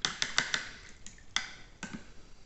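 A paintbrush being rinsed, knocking against the water pot: a quick run of clicks, then two more.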